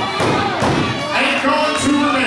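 A thud on the wrestling ring's mat at the start, followed by spectators shouting and yelling in the hall.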